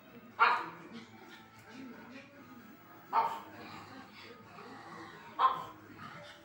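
A pug barking three times, short single barks about two and a half seconds apart, over television speech and music.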